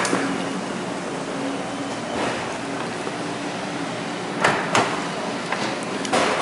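Steady hum of air conditioning or ventilation, with a few sharp knocks: one about two seconds in and two close together about four and a half seconds in.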